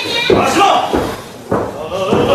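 Three sharp thuds of wrestling impacts in the ring, bodies or strikes landing, within about a second and a half. A voice shouts among them.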